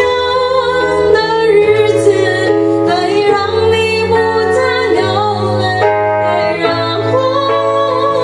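A woman singing a slow ballad into a microphone, accompanied by sustained chords on an electronic keyboard.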